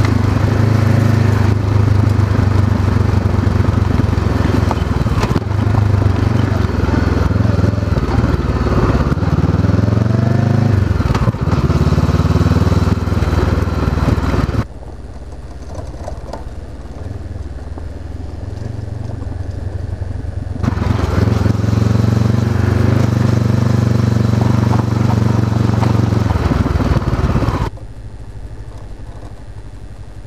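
Engine of a 2013 Honda CB500X, a parallel twin with a Staintune exhaust, running under way on the move. Its pitch sags and climbs back about ten seconds in. The sound drops sharply quieter about fifteen seconds in, comes back loud around twenty-one seconds, and drops again near the end.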